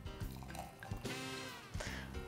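Prosecco being poured from the bottle into a flute glass, a quiet pour under background music.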